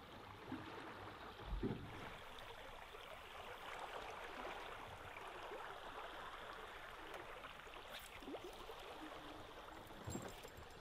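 Faint, steady rush of river water running over a shallow rapid, with a single low knock about one and a half seconds in.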